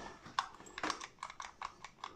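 A run of small, irregular clicks and light knocks, two or three a second, from handling the reassembled plastic CB 'grenade' microphone and working its push-to-talk switch.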